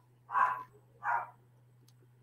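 A dog barking twice in short, separate barks, faint and heard through a video-call microphone over a steady low hum.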